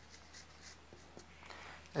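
Marker pen writing on a whiteboard: a run of short, faint strokes as a word is written out.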